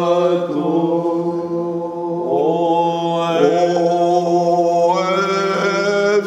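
Greek Orthodox Byzantine chant sung by men's voices: a melody moving over a single low note held steady throughout, the ison drone. The melody climbs higher near the end.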